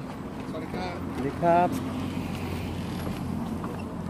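A man's voice briefly says a greeting in Thai about a second in, over a steady low rumble of outdoor background noise.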